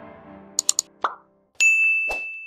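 Outro music fading out, then interface sound effects: three quick clicks, a short pop, and a loud, ringing ding as animated Like and Subscribe buttons appear.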